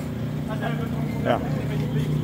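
Brief scattered voices, one saying "yeah" about a second in, over a steady low motor hum.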